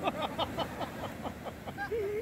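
People laughing in a quick run of short bursts over the steady wash of breaking waves, with a few more excited cries near the end.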